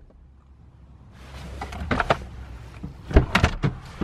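Inside a car cabin: a low steady hum, then from about a second in a rising hiss with a few sharp clicks and knocks, the loudest cluster just after the three-second mark.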